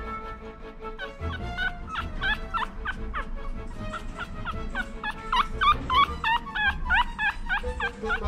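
Newborn Maltese puppy squeaking over and over in short high chirps, several a second, growing louder about five seconds in.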